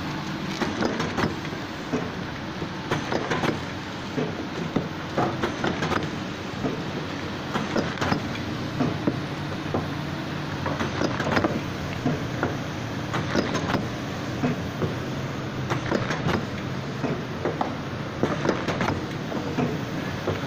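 Automatic soap wrapping and packing machine running: a steady motor hum with frequent clicks and knocks from the mechanism as wrapped bars are pushed along.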